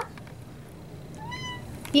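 Domestic cat giving one short, high meow about halfway through, asking for a treat.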